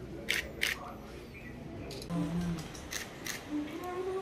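Camera shutters clicking in two quick pairs, each pair about a third of a second apart, over a low murmur of voices.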